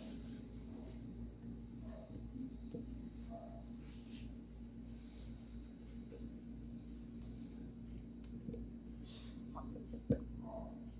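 Quiet room tone: a steady low hum, with a few faint, soft clicks and small handling noises as a condensed-milk carton is tipped over a blender jar. The thick milk pouring out makes no sound of its own that stands out.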